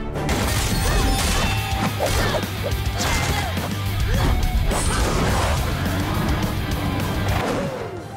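Animated fight-scene soundtrack: background music under a dense run of crash and hit sound effects, continuous throughout.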